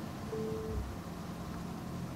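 Quiet room tone with a low steady hum, and one brief pure tone lasting under half a second, about a third of a second in.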